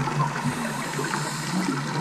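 Underwater scuba audio: a diver's exhaled bubbles gurgling and rushing past the camera housing, over a steady low hum.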